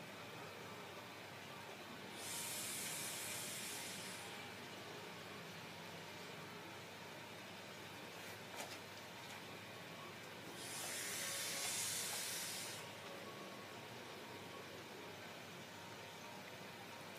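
Two hissing rushes of air and vapour, each about two seconds long, from vaping a rebuildable dripping atomizer on a box mod run at its 75-watt maximum.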